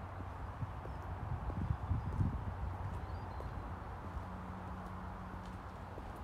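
Footsteps on brick block paving, most marked in the first two and a half seconds, over a steady low outdoor rumble.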